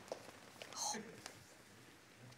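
Quiet studio with a brief, faint whispered voice a little under a second in.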